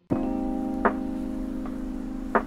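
Instrumental jazzhop music comes in right at the start after a brief silent break. It plays held, mellow chords with a light percussive tick about once a second.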